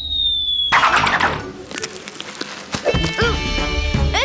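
Cartoon sound effects over background music: a descending whistle for a flying character ends under a second in with a noisy crash-like burst. A short dog-like vocal sound comes near the end.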